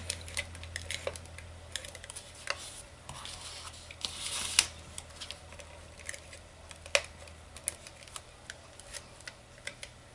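Hands handling and folding a small cardstock box on a craft mat: scattered light clicks and taps, with a brief paper rustle about four seconds in that ends in a sharper click.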